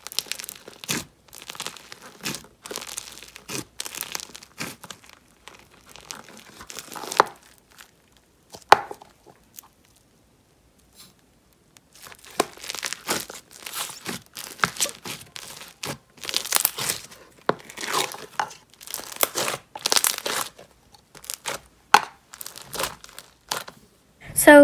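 Fingers poking, pulling and stretching a thick slime in a plastic tub, giving a run of short crackling, tearing sounds, with a pause of a few seconds in the middle.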